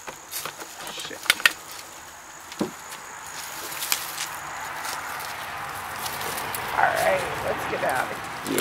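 Footsteps and rustling through dry grass and weeds, with a few sharp snaps and clicks, a pair of them about a second and a half in. A thin steady high tone runs through the first half and stops, and a short voice-like sound comes near the end.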